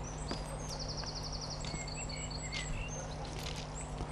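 Outdoor rural ambience: songbirds chirping with short high calls, and a rapid trill about a second in, over a low steady hum.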